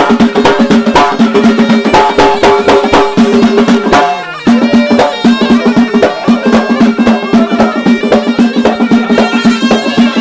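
Eastern Moroccan reggada/Allaoui folk music played live: hand-held frame drums beating a dense, driving rhythm under a steady, sustained melody note. The held note breaks off briefly about four seconds in, then comes back while the drumming runs on.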